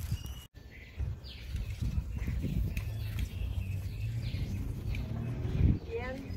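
Small birds chirping now and then: short, high, falling notes over a steady low outdoor rumble. A single thump comes near the end.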